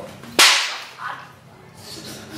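One sharp, very loud slap about half a second in: an open hand whipped against a man's back in a "whip strike" (鞭打), a crack that fades quickly.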